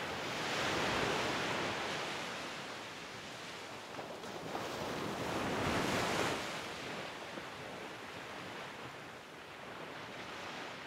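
Waves washing in: a rushing noise that swells and fades twice, about five seconds apart.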